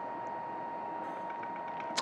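Steady low hiss of room tone with a thin, constant high whine; no distinct event.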